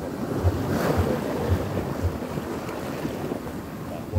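Small sea waves breaking and washing up a sandy beach and over rocks at the water's edge, with one wave splashing close by about a second in. Wind gusts thump on the microphone throughout.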